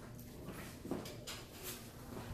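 Footsteps of a person walking past on a hard lobby floor, a few soft irregular steps, over a faint steady hum.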